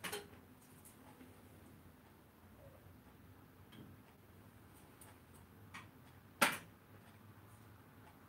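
A few scattered sharp clicks and knocks over a faint, steady low hum. The loudest knock comes about six and a half seconds in.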